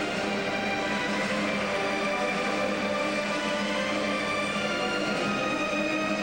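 Orchestral film-score program music for a figure skating routine, playing held chords of several sustained notes at once at a steady level.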